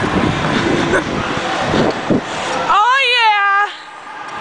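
A person's high-pitched, slightly wavering squeal held for about a second near the end, after a stretch of excited, breathy voice sounds and laughter.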